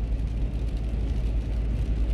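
Car cabin noise while driving: a steady low drone of engine and road with a faint even hiss above it.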